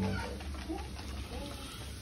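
A faint voice in the background over a low, steady hum, between louder phrases of speech.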